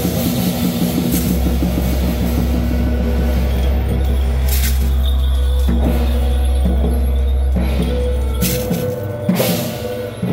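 Temple-procession drum and cymbal percussion of the kind that accompanies a Guan Jiang Shou troupe: a fast drum roll with a deep steady rumble, cymbal crashes about halfway through and again near the end, then a slower, even beat.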